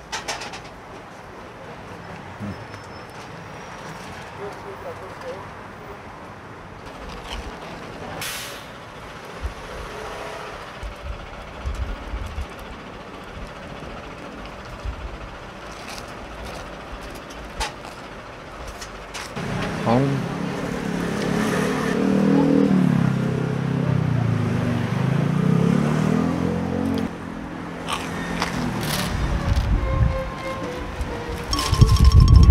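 Street noise with wind buffeting the microphone. About twenty seconds in, a heavy road vehicle's engine grows loud and wavers in pitch for several seconds, then drops away suddenly.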